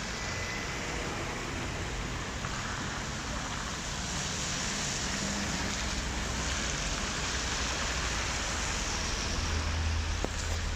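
Slow car traffic passing on a wet road: tyre hiss on wet asphalt swells as a car goes by mid-way, over a low engine hum that grows louder near the end.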